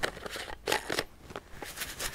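Handling a plastic bottle of silica gel beads: a series of short crackling clicks and rustles as a folded tea bag is pushed in among the beads and the screw cap is put back on.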